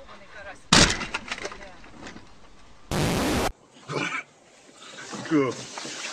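A loud crash about a second in, followed by clattering, like something breaking. A short burst of hiss follows, then a voice near the end.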